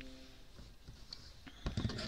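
Light handling noise: a short cluster of soft clicks and rustles near the end, as orange-handled scissors are picked up from a cutting mat among pieces of quilting fabric.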